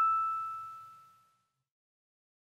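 The final note of a bell-like chime ringing out and fading away, gone about a second in, as the song ends.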